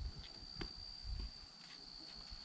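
Faint clicks and handling noise of the oil dipstick being unscrewed and pulled from a Honda ATC 200 three-wheeler's crankcase, over a steady high chirr of crickets.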